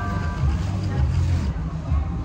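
Background noise of a busy shopping-mall food court: a steady low rumble with indistinct voices in the background. The last notes of a chiming mallet-percussion jingle die away in the first half second.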